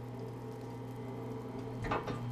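A steady low hum with several steady overtones above it, ending in a short, brief sound just before the end.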